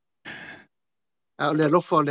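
A man's short breathy exhale, a sigh. About a second and a half in, his voice starts again with pitched vocal sounds.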